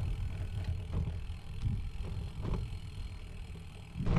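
Wind buffeting the microphone of a camera on a slowly ridden bicycle: an uneven low rumble, with a few faint ticks.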